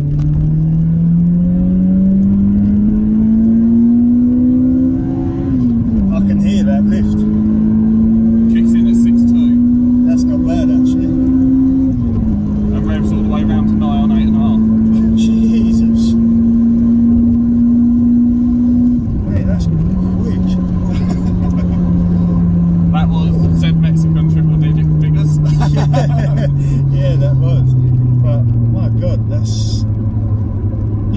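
Toyota Corolla T Sport's 1.8-litre 2ZZ-GE four-cylinder, heard from inside the cabin, revving hard through the gears. The note climbs, drops sharply at each of three upshifts, and after the last one falls steadily as the car eases off. The run pulls the engine up into its VVTL-i high-lift cam range.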